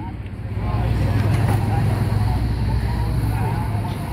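Drag racing motorcycle engine spun over by a push-on starter cart and then running at a steady, low-pitched idle, without revving.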